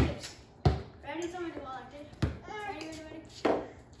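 A basketball being dribbled on a concrete patio: four sharp bounces at uneven intervals.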